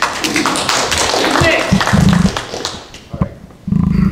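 A small group applauding: a quick scatter of hand claps for about three seconds, with voices mixed in. A few low thumps come around two seconds in and again near the end.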